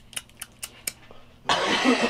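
A few faint clicks, then a man's breathy laugh breaks out about one and a half seconds in.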